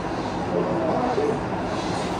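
Steady whir of a ceiling fan running, with faint low speech underneath.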